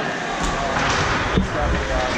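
Ice hockey game in play: sticks and puck knocking, with two sharper knocks about half a second and a second and a half in, over a steady noise of skating and voices.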